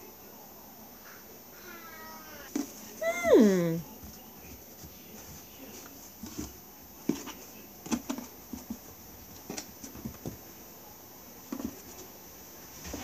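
A cat meows, one long call falling in pitch after a fainter wavering one. It is followed by a series of soft knocks as peaches are picked out of a cardboard box.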